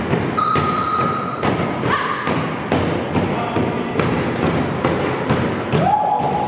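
Kangoo Jumps rebound boots landing on a hard floor in a steady rhythm, about two thuds a second.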